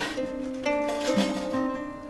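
Acoustic guitar and a small harp playing an instrumental passage together, their plucked notes ringing over one another and growing softer near the end.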